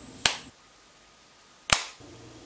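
Two finger snaps about a second and a half apart, each a single sharp crack with a short echo.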